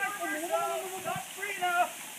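A person's voice calling out in drawn-out exclamations, over the steady rush of a waterfall.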